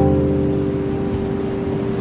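A sustained keyboard chord, struck just before and held steadily, slowly fading.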